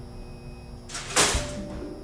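A live cat trap's door snaps shut once, a sharp clank with a short ring, a little past a second in.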